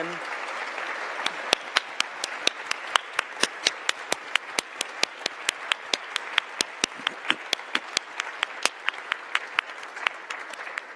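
An audience applauding in a large hall: many hands clapping together, with one nearby clapper's sharp claps standing out at about four or five a second. The applause thins toward the end.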